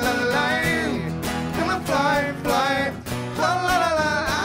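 Two male voices singing together over two strummed acoustic guitars.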